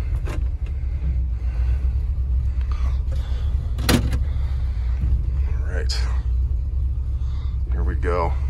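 Ford 390 V8 of a 1974 Ford F-250 idling, heard from inside the cab as a steady low rumble. About four seconds in, a single sharp clack as the parking brake release handle under the dash is pulled.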